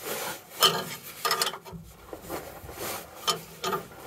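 Wrench turning the nut on a spring-brake caging bolt: a series of short metal-on-metal strokes, unevenly spaced, as the nut is worked along the bolt's square Acme thread.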